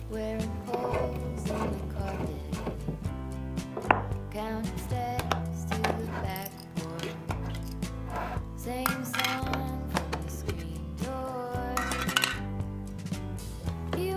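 Background music over intermittent metal clinks and clicks from Annie Sloan Chalk Paint tins, their lids being pried off with a metal tool and handled; the sharpest click comes about four seconds in.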